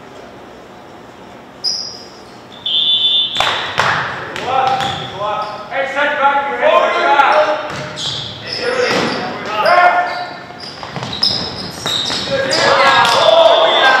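Referee's whistle blown about three seconds in, followed by a volleyball rally: sharp ball hits and players shouting, echoing in a large gym.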